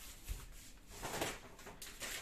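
Faint rustling of a plastic shopping bag and plastic-wrapped packaging as an item is pulled out, with a soft low thump near the start.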